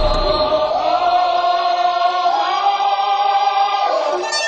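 Background music: a sustained, choir-like vocal chord held steadily, stepping up in pitch about halfway through.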